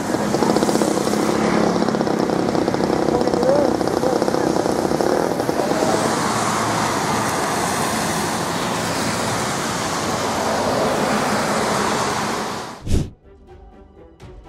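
Steady traffic and tyre noise on a wet road, with faint voices. A single sudden thump near the end, then much quieter.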